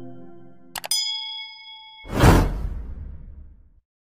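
Subscribe-button animation sound effects. Background music fades out, then a quick double mouse click about three-quarters of a second in, a bright ding that rings for about a second, and a loud whoosh about two seconds in that dies away.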